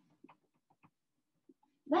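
Dry-erase marker writing on a whiteboard: a few short, faint squeaks as the words are written.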